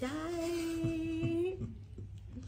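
A woman humming one steady held note for about a second and a half, then trailing off.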